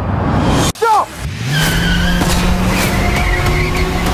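A car engine revs up about a second in and holds steady as the car speeds off, with tyres squealing. Music plays underneath.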